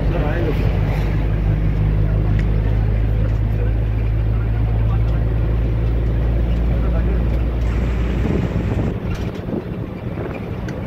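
Bus engine and road noise heard inside the passenger cabin: a steady low drone with noise above it, which drops away about eight seconds in. Passengers' voices murmur faintly in the background.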